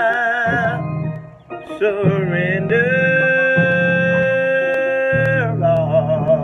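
A man singing a slow gospel song, holding long notes with heavy vibrato, with a short break about a second and a half in.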